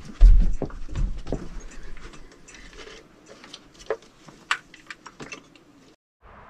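Hand work on engine wiring and parts: a heavy thump just after the start, a run of knocks and clicks in the first second and a half, then sparser, lighter clicks.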